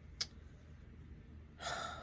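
A woman's audible intake of breath near the end, after a single short click about a quarter second in; otherwise low room tone.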